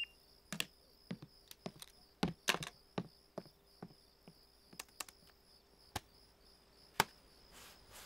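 Quiet, irregular sharp clicks and taps, about twenty of them unevenly spaced, like small objects being handled. Under them runs the faint, steady, pulsing trill of crickets.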